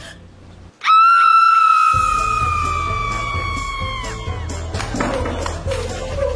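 A music sting: after a brief hush, a loud, high held note starts suddenly and sinks slightly in pitch over about three seconds. A beat with heavy bass comes in under it and carries on after the note ends.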